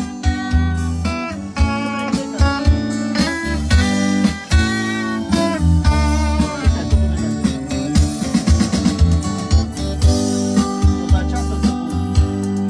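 Live band music: an electric guitar picking out a melody over a bass guitar, with a steady beat.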